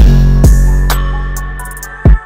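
Dark trap instrumental beat: a long 808 bass note that fades out over the two seconds, with two drum hits in the first second and a quick hi-hat roll near the end.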